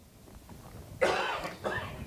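A person coughing about a second in, in two quick rough bursts.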